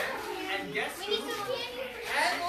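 A group of children's voices talking and calling out over one another, no single clear speaker.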